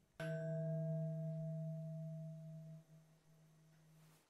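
A single deep chime, struck once just after the start, rings on with fainter higher overtones and slowly fades. It is the sting under the closing logo.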